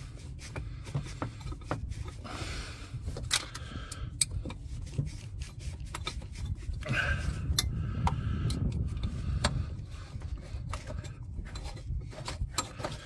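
A stuck rubber coolant hose being twisted and worked loose on its pipe stub by hand: rubber rubbing and scraping, with scattered light clicks and knocks of hands and fittings against the engine bay. The hose is coming free as it is wiggled.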